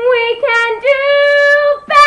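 Young female voice singing unaccompanied, drawing out the closing notes of a song: long held notes that step up in pitch about half a second in, with a short break near the end before another held note begins.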